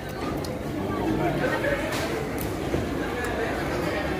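Indistinct voices talking in the background at a busy eating place, with a few light clinks of a spoon and fork against a plate.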